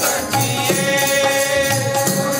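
Sikh devotional kirtan: chanted singing over long, steady held notes, with lower notes changing about every half second.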